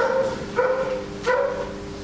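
A dog barking three times in quick succession, about two-thirds of a second apart.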